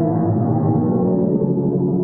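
NASA's sonification of the pressure waves around the black hole at the centre of the Perseus galaxy cluster, shifted up into human hearing: a steady, deep drone of several layered low tones.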